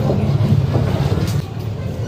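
Steady low rumble of an engine running.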